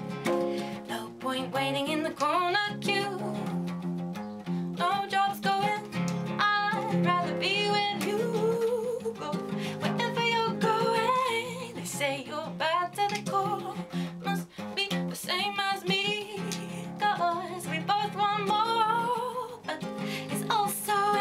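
A woman singing with a wavering vibrato over a strummed acoustic guitar, in a solo acoustic song.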